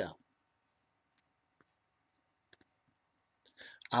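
A pause in a man's spoken monologue: near quiet with a few faint, sharp clicks scattered through the middle, his voice trailing off at the start and starting again near the end.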